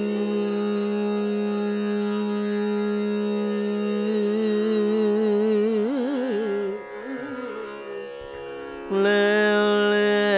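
Carnatic classical music without percussion: a long held note that breaks into quick oscillating gamakas around the middle, dips quieter, then settles on a louder new held note near the end.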